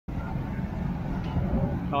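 Outdoor street ambience at a busy motorcycle fair: a steady low rumble of nearby vehicles with faint crowd chatter underneath.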